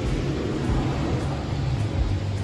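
Automatic car wash air dryer blowers, a steady rushing noise heard from inside the car's cabin, with a low hum underneath.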